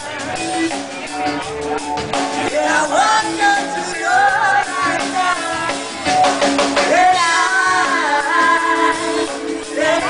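Live band music: a man singing lead over strummed acoustic guitar and a drum kit, with a cluster of drum strokes about six seconds in.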